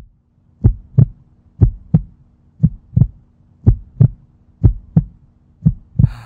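Heartbeat sound effect: a steady double thump, lub-dub, about once a second, six beats in all, over a faint low hum.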